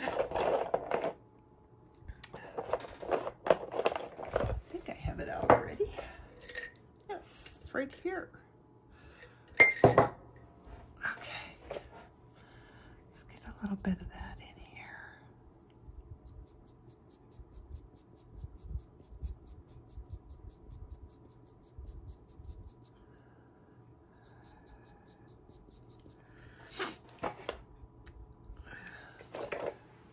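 Wooden pastel pencils clinking and knocking against each other as they are picked through and set down, mostly in the first half. Then the faint scratch of a pastel pencil drawing on paper.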